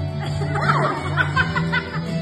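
Women laughing over music that plays steadily with a sustained bass line.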